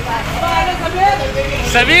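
Several people's voices over the steady low rumble of a bus engine idling close by, with one loud, gliding call near the end.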